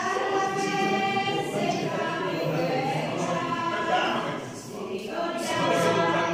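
Group of voices singing a hymn together in long held notes, with the reverberation of a church.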